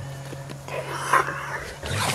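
A small dog snuffling with breathy, noisy bursts of breath while it rolls about in the grass, once about a second in and again near the end.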